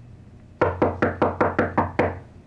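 Knuckles rapping quickly on a door: about eight quick knocks, roughly five a second, starting about half a second in.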